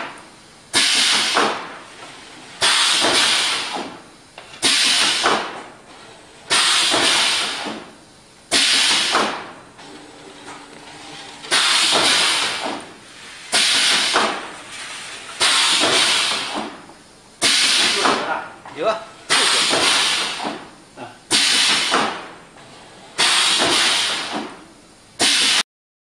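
Pneumatic machinery on an automatic croissant production line, letting out sharp bursts of compressed-air hiss about every two seconds as it cycles. Each burst starts suddenly and fades over about a second.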